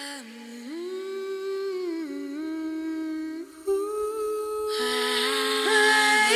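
A female voice humming a slow, wordless melody in layered harmony, the held notes gliding smoothly from pitch to pitch with no instruments or beat. More vocal layers join after about four seconds, and it grows louder toward the end.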